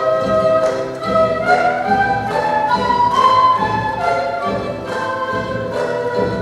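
Live Andean folk music: several quenas play a sustained melody together over guitar and charango, with a bombo drum keeping a steady beat.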